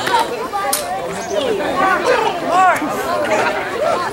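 Chatter of several people talking at once.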